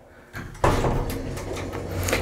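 Elevator door closing with a sudden thud a little over half a second in, followed by a steady low hum with rattle.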